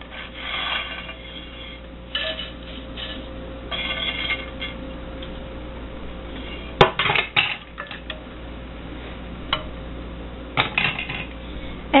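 Dry spaghetti being put into a stainless steel saucepan of stock, with light rustling, then a sharp knock about seven seconds in and several lighter clicks as the hard strands strike the metal pot.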